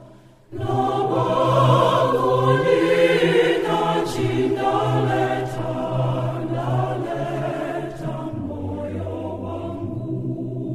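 Church choir singing a local thanksgiving hymn in a Zambian language, in several voice parts. After a brief break just at the start, the next phrase comes in about half a second in, and the lower voices shift down near the end.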